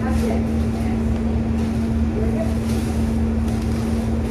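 A loud, steady hum with one constant low tone and a rumble under it, with faint soft crackles of a bread sandwich being bitten and chewed.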